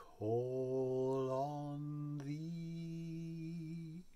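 A man singing a slow hymn line unaccompanied: two long held notes, the second a step higher, with no instruments.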